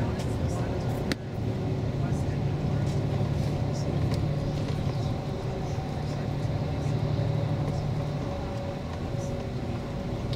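Inside a bus travelling at motorway speed: a steady low drone of engine and tyre noise, with a short click about a second in. The drone eases slightly near the end.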